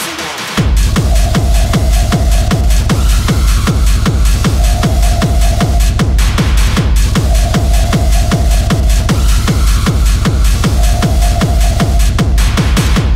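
Hard techno at 152–160 BPM: a fast four-on-the-floor kick drum comes back about half a second in after a brief drop, and drives on evenly with a repeating mid-pitched synth note over it.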